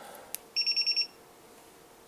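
A click as multimeter test-lead tips touch, then about half a second in a quick burst of about six high-pitched beeps from a multimeter's piezo beeper as the shorted leads bring the resistance reading down to near zero.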